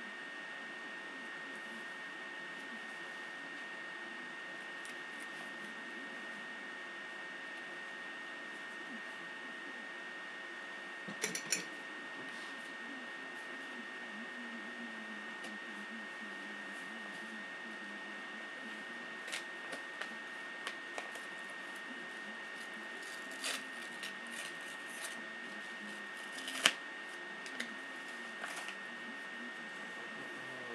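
Steady microphone hiss with a thin high whine, broken by scattered small clicks and taps from something being handled: a short cluster about a third of the way in, several more later, and the sharpest click near the end.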